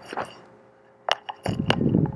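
A few short, sharp clicks and taps with a low muffled rustle, like handling or movement close to the microphone. There is no music or speech.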